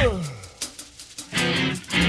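Rock band breaking down: a note slides steeply down as the band drops out, the music goes much quieter, then a short guitar phrase plays before the full band comes back in at the end.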